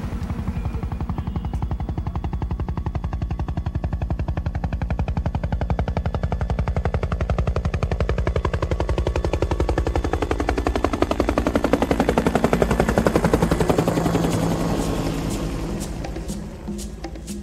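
Helicopter flying past, its rotor blades making a fast, steady chop that grows louder toward a peak late on and then fades in the last second or two. A whine falls in pitch as it goes by.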